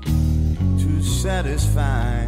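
Slow electric blues: electric guitar over bass notes, the music getting suddenly louder right at the start, with bending notes near the end.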